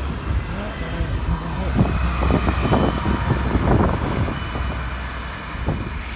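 Road traffic: a car drives past over a steady low engine rumble, with voices talking over it in the middle.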